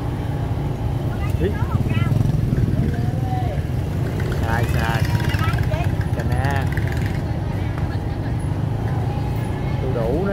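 Open-air street market ambience: short snatches of vendors' and shoppers' voices over a steady low rumble.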